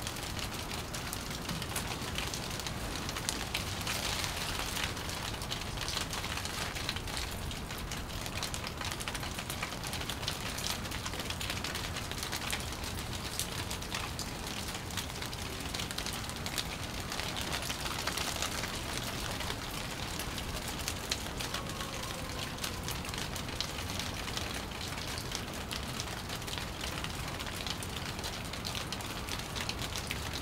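Steady rain: an even hiss of falling rain, mixed with the ticks of single drops.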